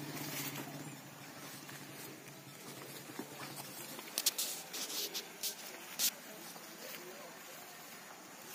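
Weeds and plant stems being pulled by hand among cassava plants: a few sharp rustles and snaps about four to six seconds in. A low engine hum fades out in the first second.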